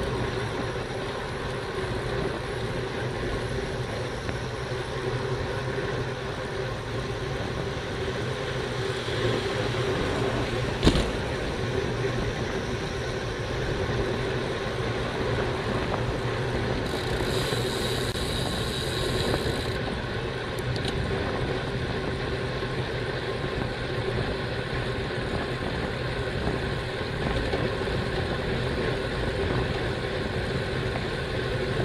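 Steady wind and road rush picked up by a bicycle-mounted camera as the bike rolls along at about 35 km/h. There is a single sharp knock about eleven seconds in, and a few seconds of high hiss just past the middle.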